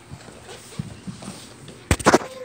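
Handling noise on a phone's microphone as the camera tumbles: a few soft bumps, then one sharp, loud knock near the end.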